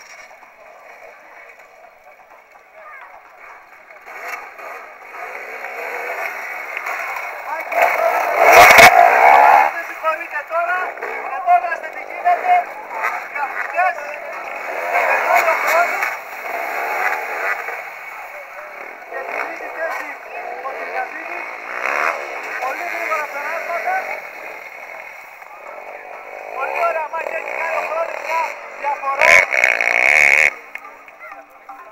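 Enduro dirt-bike engines revving on the course, rising and falling in pitch and louder from about four seconds in, with indistinct voices mixed in. Two sharp knocks, about nine seconds in and near the end.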